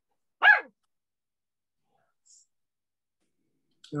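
A dog giving one short bark that falls in pitch, about half a second in.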